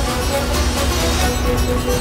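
Background music from the serial's score, with a steady held note over a full, dense texture.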